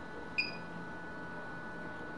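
A single short electronic beep from the M2I TOPR series touch panel as the screen is touched, about half a second in, over faint room tone.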